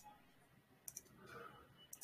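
Near silence broken by three faint, sharp clicks about a second apart: computer mouse clicks.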